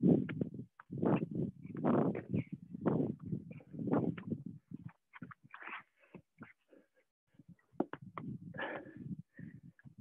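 A person breathing hard under exertion during push-ups and sit-ups. There is a heavy breath about once a second for the first half, then softer, broken breaths and small knocks. The sound cuts to silence between breaths, as video-call audio does.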